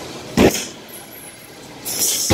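A boxing glove landing a hard punch on a heavy punching bag about half a second in: one sharp, short thud. A short hissing rush comes near the end as the next punch is thrown.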